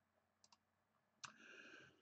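Near silence with a few faint clicks of a computer mouse, the clearest one a little over a second in.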